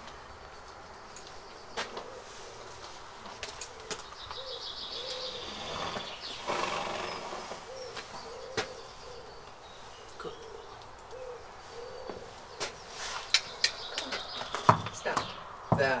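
Bridle being fitted to a horse: leather straps, buckles and bit making sharp clinks and knocks, thickest and loudest in the last few seconds. Through the middle a dove coos over and over in a steady rhythm, with small birds chirping.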